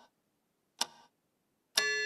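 Cartoon clock ticking, about one tick a second, each tick a short sharp click. Near the end a loud, sustained bell-like chime starts as the hands reach twelve, signalling noon.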